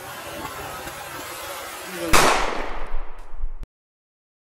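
Pool water splashing and churning as a person goes in backwards on a chair. About two seconds in comes a sudden loud bang-like burst with a low rumble under it that dies away over a second or so, and then the sound cuts off abruptly.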